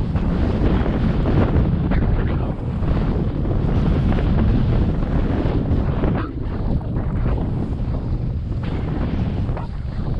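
Wind buffeting a helmet-mounted GoPro microphone as a snowboard rides fast through deep powder, mixed with the rush of the board through the snow. The level dips briefly a couple of times.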